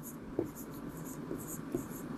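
Stylus writing on an interactive board's screen: faint scratching of pen strokes with a few light taps.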